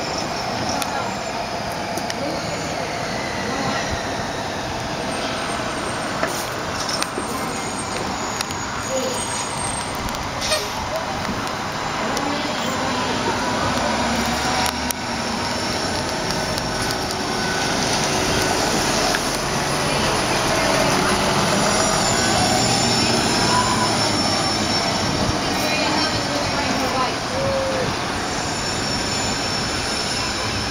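Orion VII NG diesel-electric hybrid city bus driving past amid street traffic, getting louder in the second half as it comes close, then easing off as it moves away.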